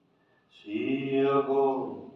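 A man's voice singing one long, steady held note in a slow worship chant. It comes in about half a second in after a brief near-silent pause and fades near the end.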